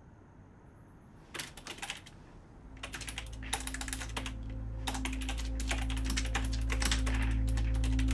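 Typing on a computer keyboard in several quick bursts of key clicks, starting about a second in. A low, steady drone swells in underneath from about three seconds in and keeps getting louder.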